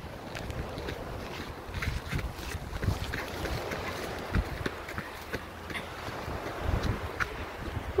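Wind buffeting a phone's microphone in a steady low rumble, with irregular light footsteps scuffing on a sandy dirt path.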